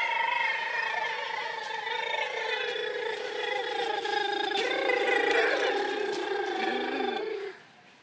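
A long, high-pitched cry held by children's voices for about seven and a half seconds, wavering slightly and sagging in pitch in its second half before cutting off near the end.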